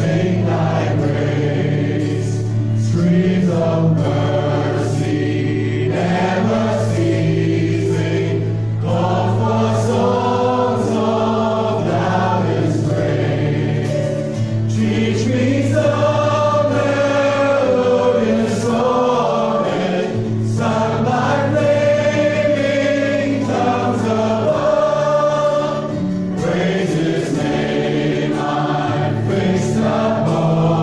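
Live church worship band playing a gospel song: voices singing over acoustic guitar, electric guitar and a drum kit.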